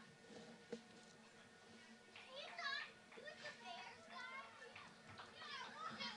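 Faint, distant young voices calling and chattering, starting about two seconds in.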